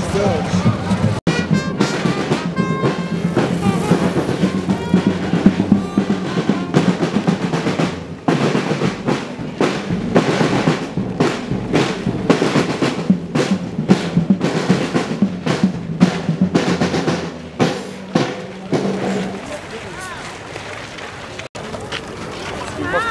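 A marching band's snare and bass drums playing a fast, steady beat with rolls, over a steady low drone that stops near the end.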